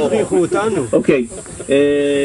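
People talking, over a steady high hiss; near the end a single voice holds one long, steady, unchanging note, like a drawn-out hesitation vowel.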